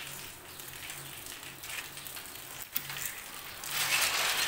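Metal rattling and scraping from a collapsible steel gate being handled, loudest in a noisy rush near the end, over a steady hiss.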